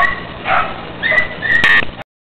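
Hunting hound baying: a series of high, drawn-out cries, with the loudest near the end.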